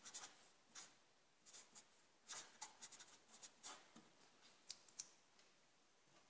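Felt-tip marker pen writing on paper: faint, short scratchy strokes coming in quick groups as the words are written.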